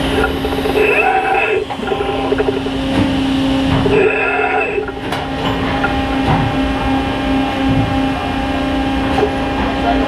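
Plastic injection molding press running with its robot arm, a steady machine hum that begins to pulse evenly about six seconds in. Indistinct voices sound over it twice early on.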